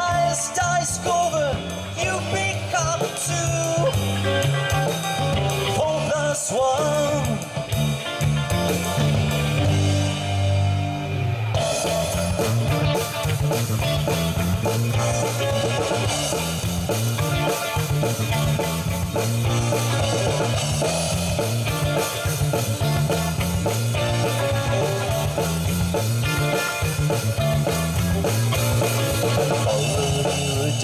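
Live rock band playing: electric guitar, bass guitar and drum kit. Over the first several seconds a melodic line glides up and down, and about eleven and a half seconds in the band grows fuller and brighter.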